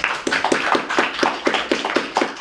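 A small audience applauding, with the separate hand claps clearly spaced at about five a second.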